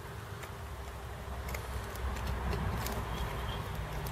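Quiet background hiss and low hum with a few faint ticks; no clear sound event stands out.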